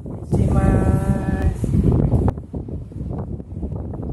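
A man's voice drawing out "permisi maaas…" ("excuse me, sir…"), the long vowel held steady for about a second near the start, over wind buffeting the microphone.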